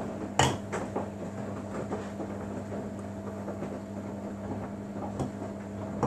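Samsung Bespoke AI front-loading washing machine in its main wash: the drum turns wet, foamy laundry through water over a steady motor hum. A sharp knock comes about half a second in and a smaller one about five seconds in.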